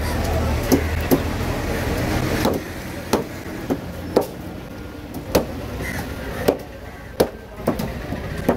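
A heavy curved fish-cutting knife chopping through fish flesh and bone onto a wooden block: about ten sharp strikes at irregular intervals. A low motor rumble runs under the first two and a half seconds, then drops away.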